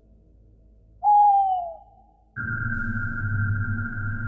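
A single owl-like hoot, loud and falling in pitch, about a second in. About two and a half seconds in, a steady eerie synthesizer drone with a low hum starts and holds.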